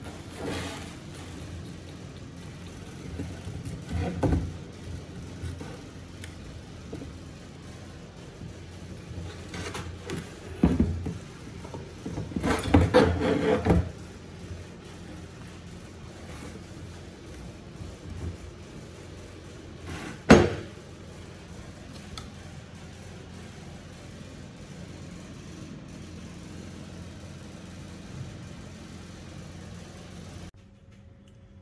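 Handling noise from a homemade steel handbrake lever and bracket being swung on its pivot and moved on a hard floor: a few metal knocks, a longer rattling scrape about twelve to fourteen seconds in, and a sharp knock about twenty seconds in, over a low steady hiss.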